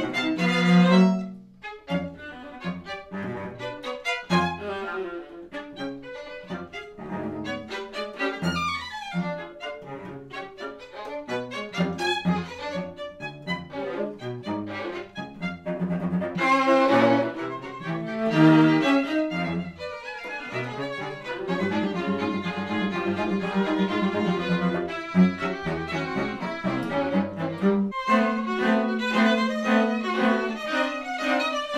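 A string quartet of two violins, viola and cello plays modern classical music, mostly short, detached notes broken by brief pauses. Near the end it turns loud and heavily accented.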